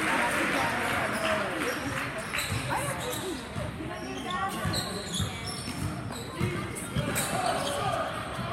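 Indoor basketball game: a ball bouncing on a hardwood court and a few short sneaker squeaks, over spectators' chatter.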